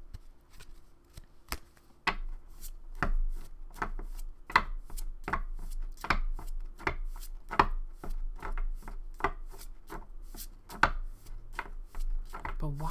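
A deck of oracle cards being shuffled by hand: a steady run of short card slaps, about two to three a second, soft at first and stronger from about two seconds in.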